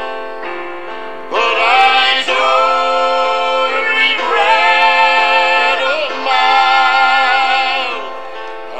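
Southern gospel song between sung lines: long held chords with a slight waver, swelling louder a little over a second in and easing off near the end.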